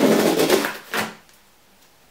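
A cardboard gift box and its packaging rustling and scraping as they are handled: a noisy stretch of about a second, then a shorter one.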